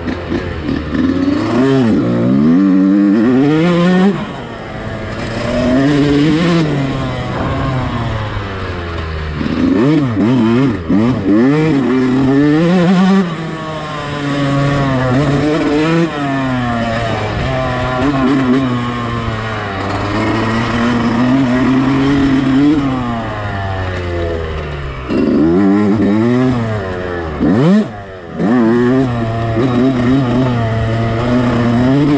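125cc motocross bike engine heard from on board, its pitch climbing and falling again and again as the throttle is worked around the track. The engine sound drops away briefly near the end and then picks up again.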